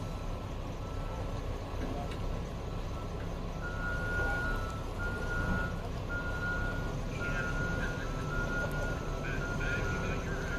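Backup alarm on distant earthmoving equipment beeping on and off, one steady high tone, growing clearer after a few seconds, over a steady low engine rumble.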